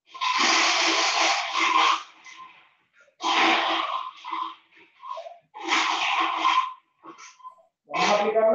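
Ice rattling in a metal cocktail shaker, in three bursts of a second or two each, with short gaps between them.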